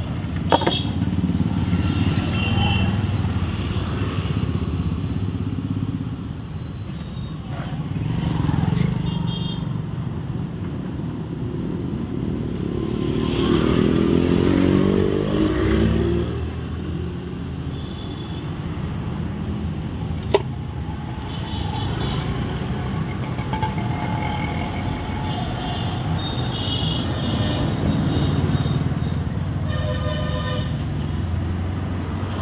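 Street traffic with motorcycles running past, one passing vehicle loudest near the middle and brief horn toots. A sharp click twice, about half a second in and about two-thirds of the way through.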